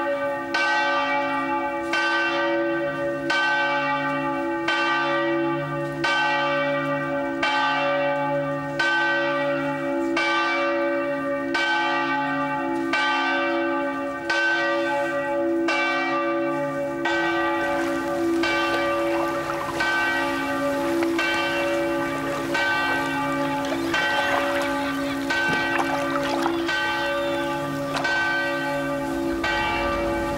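Bells ringing, a steady peal of strikes about three every two seconds over a sustained overlapping hum. From about halfway through the strikes blur together and a faint background noise comes in under them.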